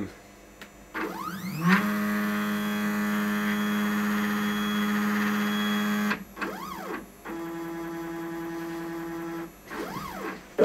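Stepper motors of a 3D-printed CNC router whining through a homing cycle. The pitch rises as they speed up about a second in and holds steady for several seconds. After a brief rise and fall in pitch it settles to a steady, higher tone, and glides again near the end.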